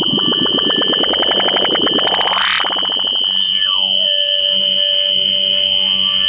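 Electronic noise music: a steady high whine under a fast stream of clicks that speeds up and sweeps up to a shriek about two and a half seconds in. A glide then falls away and settles into a lower steady tone over a soft, even pulse.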